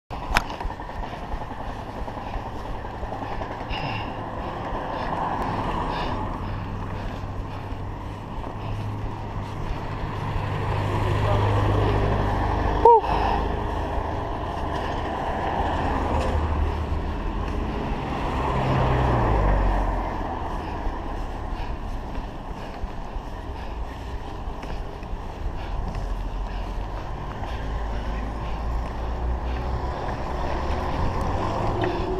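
Steady wind and road rumble picked up by a chest-mounted action camera on a moving bicycle, with cars passing and swelling in level now and then. A short sharp squeak sounds about 13 seconds in.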